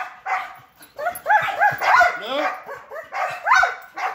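Belgian Malinois giving a rapid run of short, high-pitched yips and whines, about a dozen in four seconds. The dog is worked up and trying to break its sit as a man approaches.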